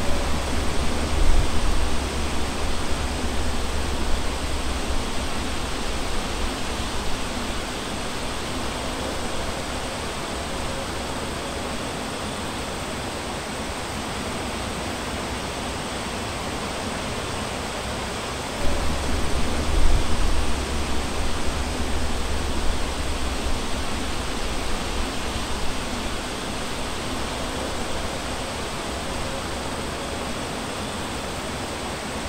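Steady rushing noise with no pitch, with a heavier low rumble in the first few seconds and again about two-thirds of the way through.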